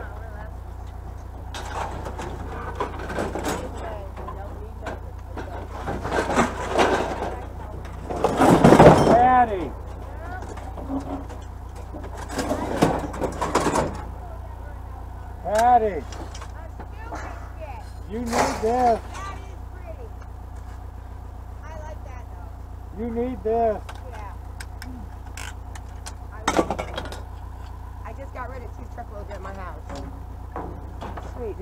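Indistinct voices over a steady low engine rumble, with several clatters of scrap being moved about.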